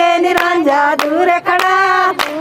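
Women singing a giddha boli in long held notes, with a group clapping hands to the beat, about two claps a second.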